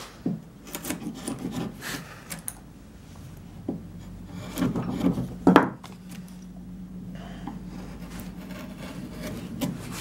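Hand-pushed carving gouge paring linden wood in short scraping cuts, with a louder cluster of cuts about halfway through.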